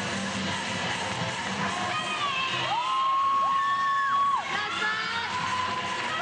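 Routine backing music with an arena crowd cheering and shouting over it; a long high held tone sounds through the middle.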